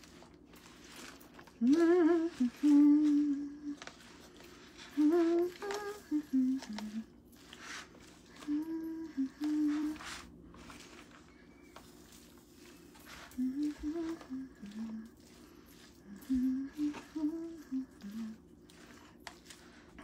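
A woman humming a tune to herself in about five short phrases with pauses between them, over faint clicks and scrapes of a spatula stirring salad in a plastic container.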